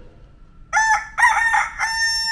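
Rooster crowing once, a cock-a-doodle-doo in three parts with the last note held longest, starting about two-thirds of a second in: a sound effect used as a good-morning cue.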